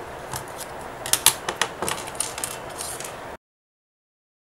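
Handling noise: a few light clicks and taps over low room hiss, then the sound cuts off suddenly about three and a half seconds in.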